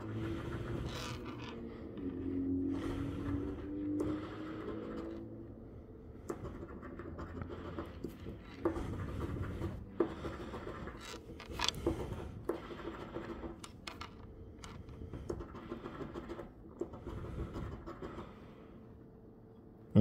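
A metal coin scratching the coating off a paper scratch-off lottery ticket in irregular, repeated short strokes.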